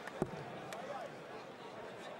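A steel-tipped dart strikes a Unicorn Eclipse Pro bristle dartboard with a single sharp thud about a quarter of a second in, followed by a fainter click about half a second later.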